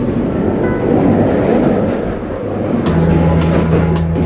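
London Underground train running, a dense rumble and rattle. About three seconds in, music starts over it with a steady low bass and a regular beat of sharp hits.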